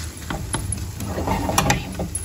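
Wooden spatula knocking and scraping against a small non-stick frying pan while loosening the edge of a setting tortilla: a few sharp clicks about half a second in and two more near the end.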